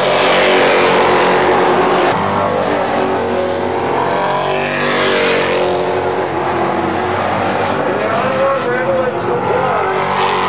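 Several stock car engines running at racing speed around an asphalt oval, the sound swelling twice as packs pass close by: once just as it begins and again about five seconds in.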